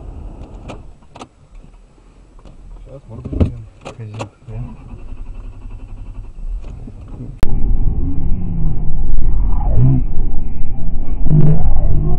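Car interior noise on a snowy road: a low engine and road drone with a few sharp clicks and knocks. About seven seconds in it cuts suddenly to a much louder cabin rumble with a voice.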